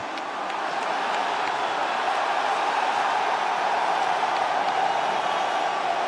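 Large arena crowd cheering and shouting together, a dense steady noise with no single voice standing out, swelling slightly in the first couple of seconds.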